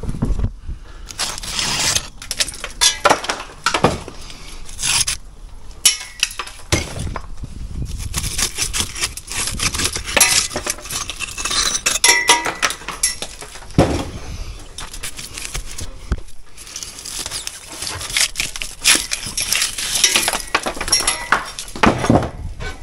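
Loose old bricks and crumbling mortar being worked by hand: an irregular run of sharp clinks and knocks of brick on brick, with gritty scraping between them.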